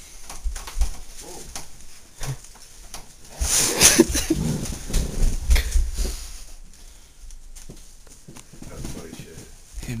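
Indistinct voices, with no clear words, and scattered knocks, thumps and rustling from a handheld camera being swung about; the loudest moment is a short noisy outburst about four seconds in.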